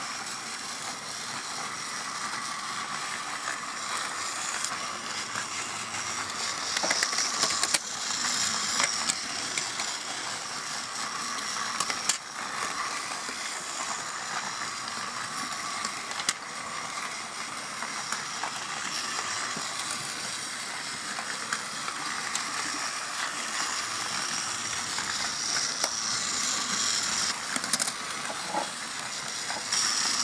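A steady hiss throughout, with a few sharp clicks and taps of plastic toy pieces being handled.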